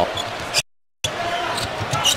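Basketball being dribbled on a hardwood court over arena crowd noise. The sound drops out completely for a moment a little over half a second in.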